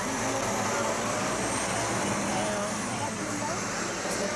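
Scania coach's diesel engine running steadily as the bus pulls away down the street, with voices faintly under it.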